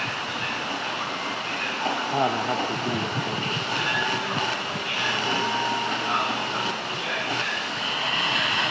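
Steady hissing background noise, with faint voices talking underneath.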